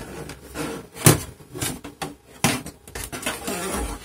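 The plastic back cover panel of a Lenovo IdeaCentre all-in-one is handled and offered up against the case, making plastic clacks and scrapes. Two sharper knocks come about one second and two and a half seconds in.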